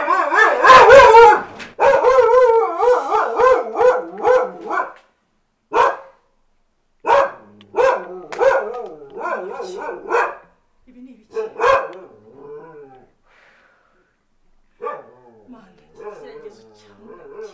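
A woman wailing and crying loudly in a wavering voice for about five seconds, then in short separate sobbing cries that fade out near the end.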